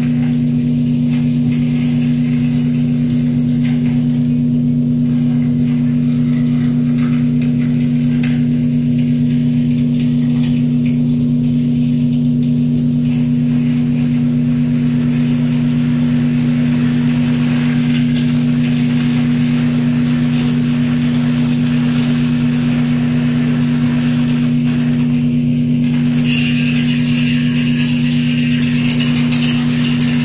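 Live electronic improvised music: a steady drone of two held low tones, with crackling noise above it. A bright high hiss joins about four seconds before the end.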